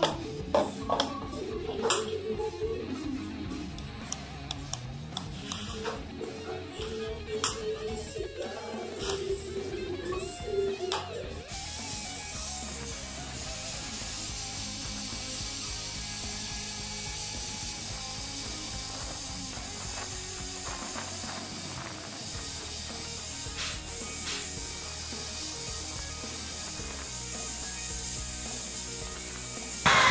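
Light metallic clicks of a Glock pistol's slide and a cartridge being worked by hand against the feed ramp, over background music. About eleven seconds in, the sound cuts to a steady hiss.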